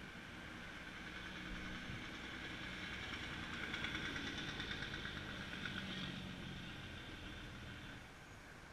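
A passing motor vehicle: engine and road sound that swells to its loudest about halfway through, then fades away.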